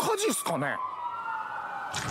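Emergency vehicle siren sounding in the anime's soundtrack. One steady tone runs throughout; about a third of the way in, a second tone joins and slowly rises while the first slowly falls.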